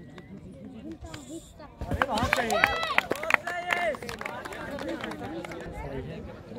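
Several voices talking and calling out at once, loudest between about two and four seconds in, with a few sharp knocks among them.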